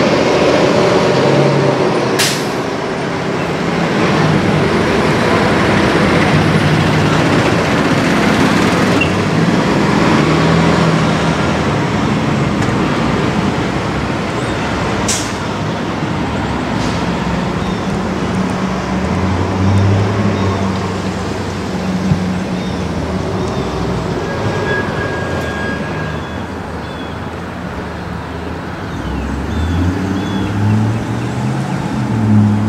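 A large engine running steadily, its low hum shifting up and down in pitch, under a constant roar, with two sharp clanks, one about two seconds in and one about fifteen seconds in.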